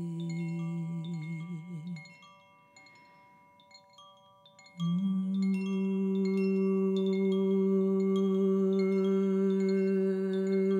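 Koshi chime ringing in scattered high, tinkling notes over a woman's wordless voice holding a low note. The voice fades out about two seconds in, leaving only faint chime notes, then comes back on a slightly higher held note about five seconds in.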